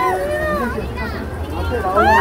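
Close crowd of young women fans calling out in several overlapping high voices, shouting greetings such as "Happy New Year" in Chinese, over a steady crowd babble.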